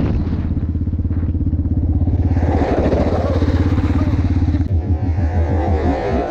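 Yamaha Raptor 700R ATV's single-cylinder four-stroke engine running at low revs as the quad slows on gravel, with an even, rapid pulsing exhaust note once the wind noise falls away. Near the end the firing becomes slower and uneven, like the engine dropping to idle.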